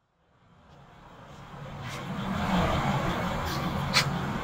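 A low, steady vehicle rumble of outdoor ambience fades in from silence, swelling over the first two seconds and then holding level, with a sharp click near the end.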